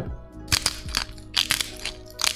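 Hand-twisted salt grinder cracking salt crystals: several short, crackly grinding bursts in quick succession as the grinder is turned.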